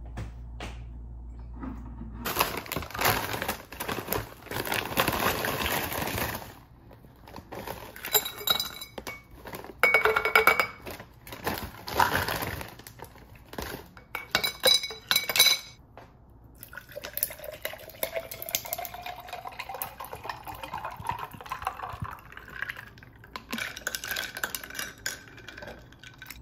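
Drink being made in a glass mason jar: clinks of glass and a metal straw against the jar, and water poured in during the second half, its pitch rising steadily as the jar fills.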